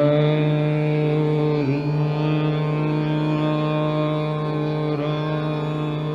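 Male Hindustani classical voice holding one long, steady note in a slow vilambit rendering of Raag Marwa, with a slight dip about two seconds in, over harmonium accompaniment.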